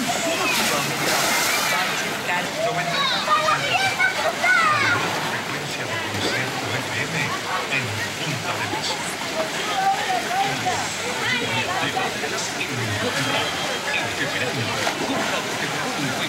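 Many children and adults talking and calling out around a swimming pool. About a second in, a splash as a rider comes off the water slide into the pool, with water sloshing after it.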